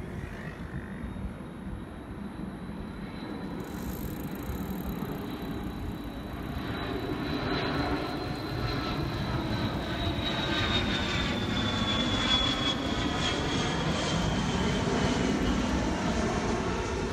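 Jet airliner flying low overhead, its engine noise building steadily louder. A high whine from the engines holds its pitch and then falls over the last few seconds as the aircraft passes.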